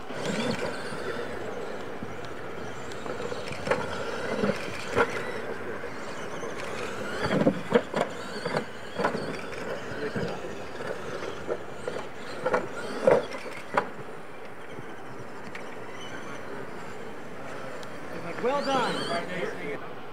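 Radio-controlled monster trucks racing down a dirt track over ramps, heard from a distance over steady outdoor noise, with scattered short knocks through the middle. Voices come in near the end.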